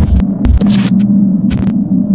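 Glitch-style logo intro sound effect: a loud, steady electric buzz broken by several sudden bursts of static crackle and clicks.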